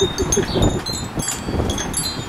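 Wind chimes tinkling, several high ringing tones at once, over a low rumble of wind on the microphone.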